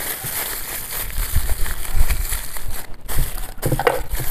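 Aluminium foil crinkling as hands fold and press it down around a tray, with a few soft thumps on the wooden board and wind rumbling on the microphone.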